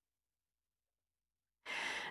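Dead silence, then near the end a short in-breath from a woman narrator, taken just before she speaks again.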